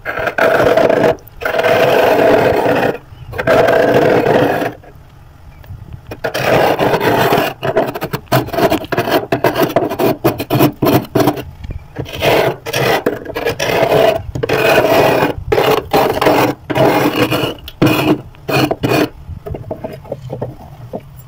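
A large metal spoon scraping flaky frost off the inside wall of a freezer. There are three long scrapes at first, then after a short pause many shorter, quicker strokes.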